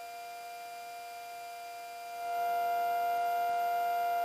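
Steady electrical hum in the aircraft's headset intercom and radio audio: a few fixed tones. A little over two seconds in it gets louder and more tones join.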